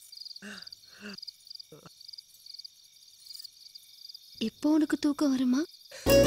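Crickets chirping in a steady high pulsing rhythm, two or three chirps a second. Over them come two short soft laughs about half a second and a second in, and a longer, louder laugh near the end.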